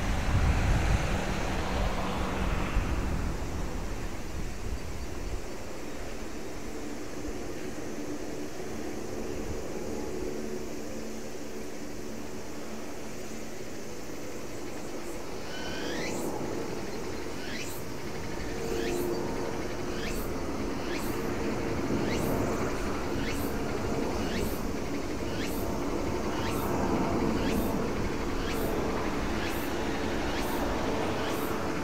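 Four Rolls-Royce AE 2100 turboprops of a C-130J Super Hercules running on the ground as it taxis and turns, a steady propeller drone with a low hum, louder in the first few seconds. About halfway through, a quickly repeating high chirp joins it.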